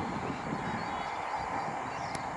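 Steady wheel-and-rail running noise of a passenger train hauled by a WAP 4 electric locomotive as it pulls away, with its horn sounding.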